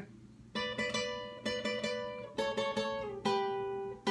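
Twelve-string acoustic guitar (Takamine EF381SC) picking a single-note requinto melody in D high up the neck. Quick groups of picked notes start about half a second in, and the run settles on one long ringing note near the end.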